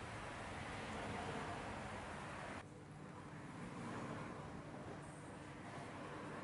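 Steady outdoor street ambience, a hiss of traffic, that cuts off suddenly about two and a half seconds in, giving way to quieter indoor room tone with a faint steady hum.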